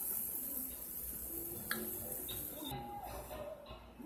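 Hot oil sizzling as battered Oreos deep-fry in a pan, with a steady hiss that cuts off about two-thirds of the way through. Faint music runs underneath.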